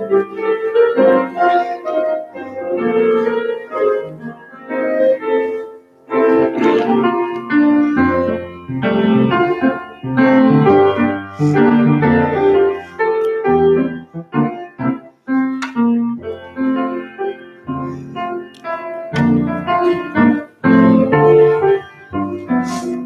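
Piano playing an instrumental piece, with low bass notes joining about eight seconds in.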